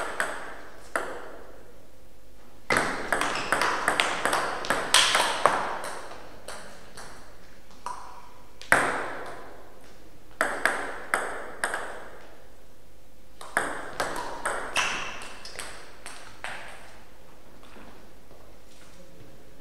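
A table tennis ball clicking back and forth off rackets and the table in several rallies: a long run of quick hits about three seconds in, shorter runs later, and pauses between points. Each hit echoes briefly in the hard-walled hall.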